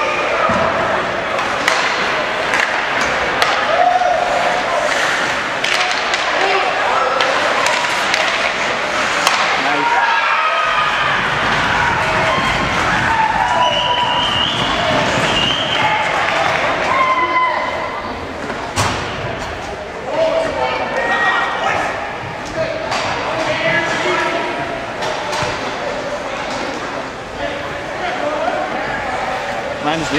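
Ice hockey play in a rink: repeated sharp slams and thuds of the puck, sticks and players hitting the boards and glass, over a background of voices.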